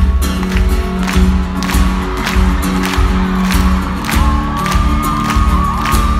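Live arena concert music: a steady beat of bass drum with a sharp clap at about two a second, the crowd clapping along, and a held high tone entering about two-thirds of the way through.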